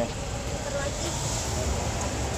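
Roadside street ambience: a steady low rumble of traffic with faint voices in the background.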